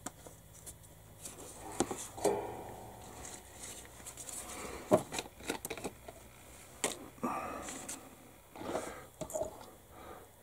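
Modelling paint bottles and tools being handled and set down on a workbench: scattered clicks and knocks, paper towel rustling, and a short squeak about two seconds in.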